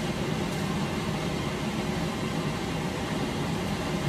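Steady low mechanical drone with an even rushing noise over it, heard inside an RV cabin.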